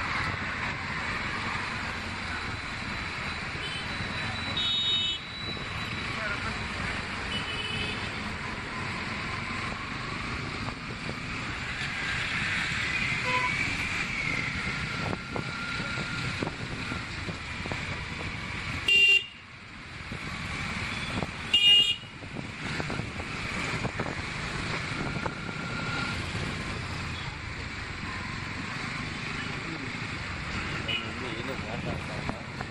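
City traffic heard from a moving motorcycle: steady engine and road noise, with vehicle horns tooting now and then. Two loud, short horn blasts about three seconds apart come about two-thirds of the way through.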